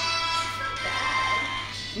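Music from a video playing through the Huawei Mate X's single bottom speaker, on a pre-release unit: held notes over a steady low hum.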